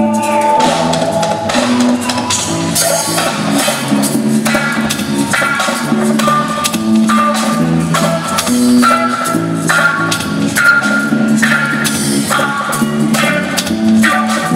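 Live band playing a reggae song: drum kit, guitar, keyboards and percussion in a steady groove.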